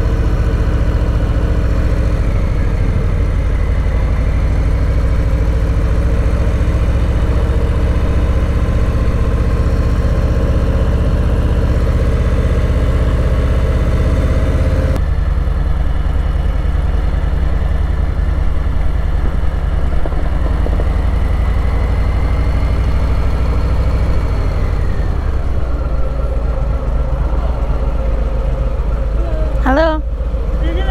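2019 Harley-Davidson Low Rider's Milwaukee-Eight V-twin engine running at low road speed, heard from the rider's seat. The engine note eases off and falls in pitch as the bike slows near the end.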